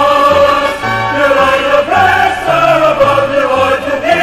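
Choir singing a rallying campaign song over instrumental backing, with long held notes and a moving bass line.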